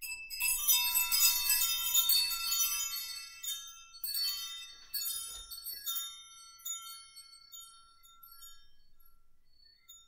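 Chimes ringing: a dense shimmer of many high metallic notes at once, then a few single struck notes, each ringing out and fading, growing softer toward the end.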